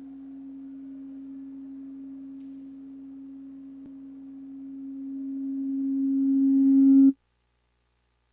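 A single held low tone, steady at first, then growing much louder over its last few seconds before cutting off abruptly near the end.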